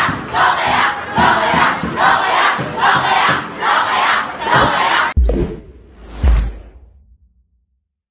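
A crowd of students chanting together in a steady rhythm, about three shouts every two seconds. About five seconds in it cuts off suddenly, and two deep hits of a news channel's logo sting follow and fade away.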